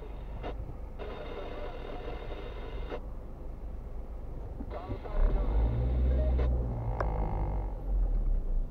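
Inside a car cabin: a car radio playing indistinct talk over the low rumble of the car. About five seconds in the low rumble grows louder as the car moves off in traffic.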